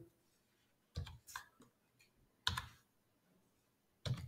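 A few computer keyboard keystrokes: a quick cluster of clicks about a second in, and one more single click a little after halfway.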